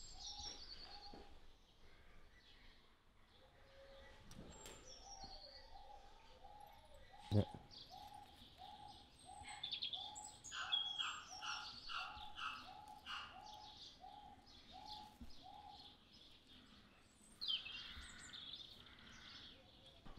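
Faint animal calls: an even series of short notes at one pitch, about two a second, with higher bird chirps joining in around the middle and again near the end.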